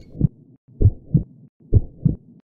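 A slow heartbeat: low double thuds, lub-dub, repeating a little under a second apart, with no music under them.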